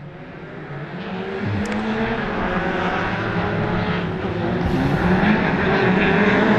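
Race car engine of a small hatchback (class up to 1800 cc) approaching under power, getting steadily louder, its revs rising and dipping as it is driven through the course.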